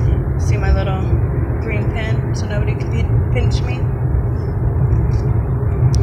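Steady low rumble of car road and engine noise inside the cabin of a moving car, with a few brief fragments of speech in the first half.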